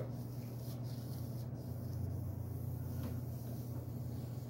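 Faint rubbing of a hand-held wipe drawn along a long steel sword blade, wiping off oil and sanding residue, over a steady low hum.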